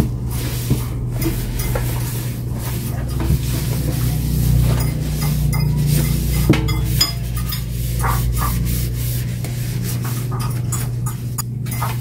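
Cloth rubbing against the inside of an air fryer basket in a run of soft wiping strokes, with one sharper knock about six and a half seconds in. A steady low hum runs underneath.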